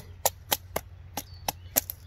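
A wooden baton striking the spine of a Cold Steel Pendleton Mini Hunter knife, driving the small blade down through a piece of wood to split it: a run of sharp knocks, about four a second.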